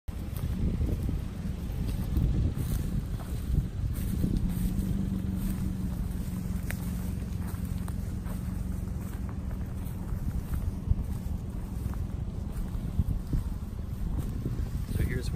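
Wind buffeting the microphone with an uneven low rumble. For several seconds in the middle a distant engine drones steadily. Tall grass rustles faintly as someone walks through it.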